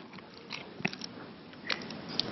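Quiet room tone with a few faint, scattered clicks and soft rustles.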